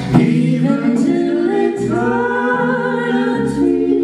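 A folk trio singing live in close harmony, long held notes with the chord moving every second or so, over strummed acoustic guitar and electric bass.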